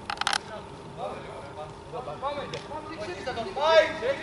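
Men's voices calling out across the pitch, fainter at first and louder near the end. There is a brief burst of sharp clicks right at the start.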